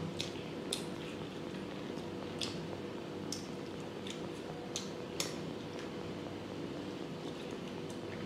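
Fingers squishing and mixing cooked rice with pork curry on a plastic tray, with a handful of short sharp clicks scattered through it over a steady low background hum.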